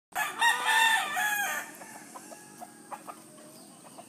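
A rooster crows once, loud, cutting off about a second and a half in, followed by a few faint short clucking calls.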